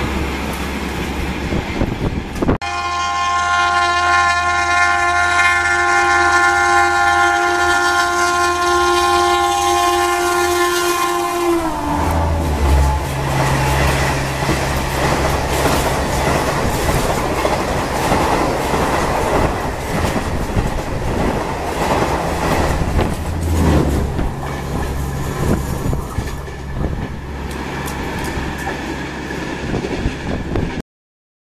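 An express train passes at speed behind a WAP-7 electric locomotive. Its horn is held for about nine seconds, then drops in pitch as the locomotive goes by. The coaches follow in a steady rush of wheel and rail noise that fades near the end.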